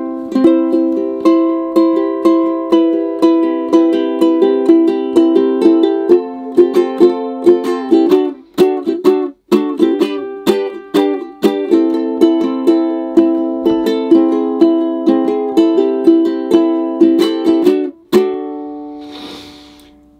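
Luna Uke Henna Dragon concert ukulele, a laminated nato plywood instrument, strummed in a steady rhythm of chords with a brief break around the middle. Its tone is boxy and muffled, with little volume. A final chord rings out near the end.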